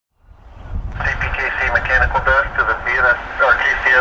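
Railroad radio chatter from a scanner: a crew member's voice, thin and narrow-sounding, fading in about half a second in, over a steady low rumble.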